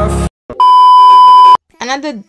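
Electronic dance music cuts off abruptly, followed by a loud, steady beep at one pitch lasting about a second, an edited-in bleep tone. A woman starts talking near the end.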